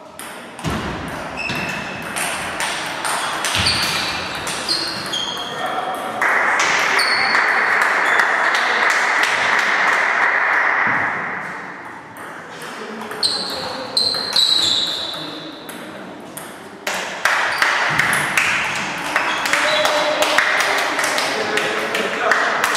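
Table tennis balls clicking off bats and bouncing on tables, with many short ringing pings from several matches in a hall. From about six to eleven seconds a louder steady rushing noise covers them.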